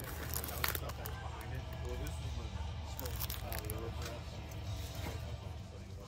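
Plastic CD jewel cases clicking and clacking against each other as they are flipped through in a bin, a run of sharp irregular clicks, over faint background voices and music.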